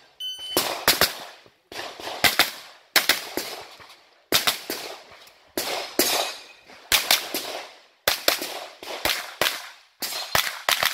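An electronic shot-timer start beep just after the start, then a 9mm blowback pistol-calibre carbine firing rapid pairs and strings of shots, each crack with a short echo.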